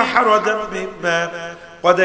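A man's voice chanting a melodic line through a microphone, long-held notes with a wavering pitch, broken by a short breath near the end.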